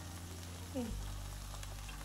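Faint, steady sizzling of an onion-tomato chutney cooking in the pot, over a low steady hum. A brief "mm" of a voice comes about a second in.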